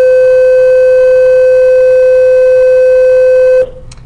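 A loud, steady electronic beep at one unchanging pitch that cuts off suddenly about three and a half seconds in.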